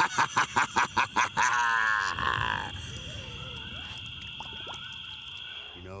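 A man laughing: a loud, rapid run of evenly spaced laughs, about seven a second, that trails off after about two seconds. A quieter, steady high-pitched drone follows and stops near the end.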